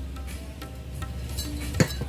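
A drink sipped through a straw from a glass, then a single sharp knock near the end as the glass is set down on a hard surface.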